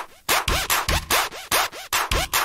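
Jumpstyle electronic dance track: the music cuts out briefly at the start, then comes back as rapid, noisy synth hits over a kick drum. Each hit carries a quick upward pitch sweep.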